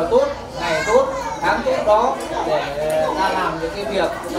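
Speech: people talking, with no other sound standing out.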